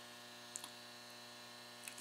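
Near silence: a faint, steady electrical hum in a small room, with a small click about half a second in.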